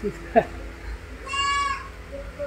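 A goat bleats once, a short high-pitched call of about half a second, about a second and a half in. It comes just after a brief sharp click.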